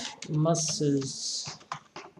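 A few quick keystrokes on a computer keyboard near the end, typing a single word, after a short stretch of a voice speaking.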